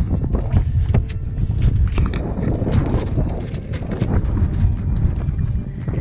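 Wind buffeting a body-worn action camera's microphone: a dense, low rumble with a few light knocks.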